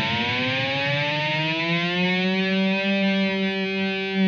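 Electric guitar's open G string held as one sustained note: it starts with the tremolo bar pushed all the way down and glides slowly up in pitch as the bar is let back, levelling off at the string's natural pitch about three seconds in.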